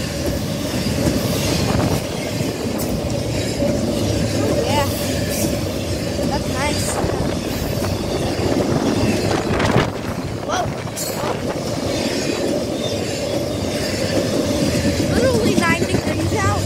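Norfolk Southern freight train passing close by: a continuous loud rumble and clatter of wheels on the rails, with a steady thin tone over it, a few short squeaks, and one louder clank about ten seconds in.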